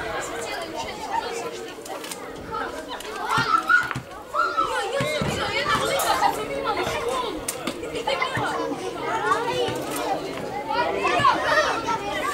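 Young boys calling and shouting to each other while playing football, several voices overlapping throughout.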